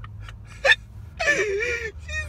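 A person gasps sharply once, then lets out a high, wavering squeal of stifled laughter, over a steady low hum.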